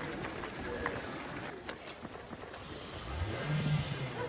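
Car engine revving up briefly near the end over general street noise.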